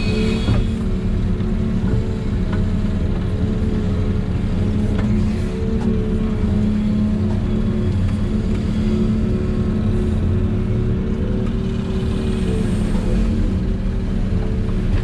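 Volvo EC380E excavator's engine and hydraulics running steadily under working load, heard from inside the cab, a constant hum with a whine whose pitch shifts slightly as the machine digs and swings.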